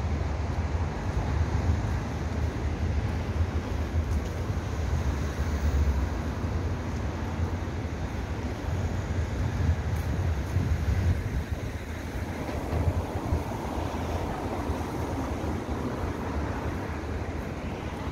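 Steady outdoor city ambience: a low, fluctuating rumble of distant traffic mixed with wind buffeting the microphone.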